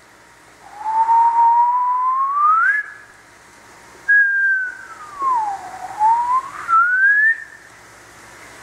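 A man whistling two long sliding notes in imitation of the wind blowing. The first note climbs steadily. After a short break, the second dips low and then rises again.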